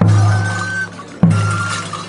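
Andean festival music: a deep drum beat struck twice, about a second and a quarter apart, each with a metallic clatter and a low ringing that fades, under short high held flute notes.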